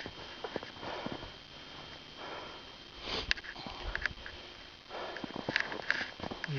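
A man sniffing and breathing hard in cold air close to the microphone, several short rushes of breath about a second apart.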